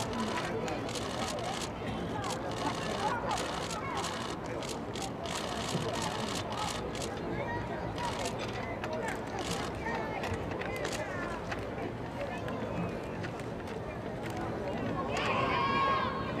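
Open-air stadium ambience: indistinct, distant voices over a steady background hum, with scattered sharp clicks. A clearer voice comes in near the end.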